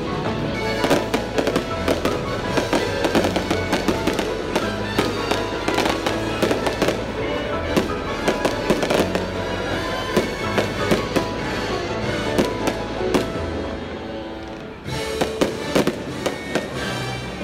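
Fireworks going off in quick succession, many sharp bangs and crackles over steady music. The bangs lull briefly a little before the end, then start again.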